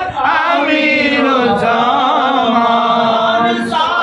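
Several men chanting an Urdu devotional song in unison, voices alone, on long held notes with a wavering pitch; a short breath break comes just before the end as a new phrase starts.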